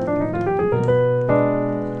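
Piano playing a left-hand A–E♭–F–C voicing under a melodic-minor run in the right hand that steps upward. About a second and a half in, it changes to a new held chord, a B–G♯–D diminished voicing that leads toward C minor.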